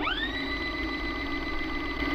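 A VHS videocassette recorder rewinding a tape: a motor whine that rises quickly at the start and then holds a steady pitch over a buzzing drone.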